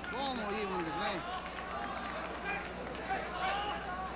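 Several voices shouting, with the words not made out, in bursts during the first second and again near the end, over a steady low hum.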